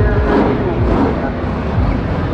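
Drag race car's engine running at low speed as the car rolls into the staging beams, with a track announcer talking over it.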